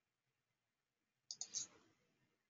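Near silence, then a quick pair of computer mouse clicks about a second and a half in.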